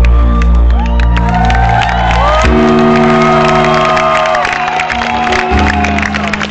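Rock band playing live, with held guitar and bass chords that change about two and a half seconds in and again near the end, over a cheering, whooping crowd.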